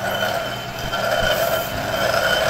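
Metal lathe running with a steady hum and whine, a couple of low knocks about a second in.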